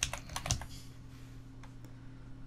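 Computer keyboard keystrokes typing a word: a quick run of clicks in the first half second, then a couple of fainter clicks later on.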